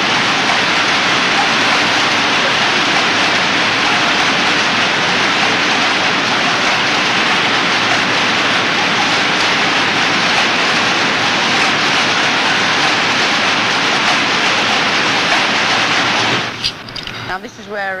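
A loud, steady rushing noise with no rhythm or pitch, which cuts off suddenly near the end.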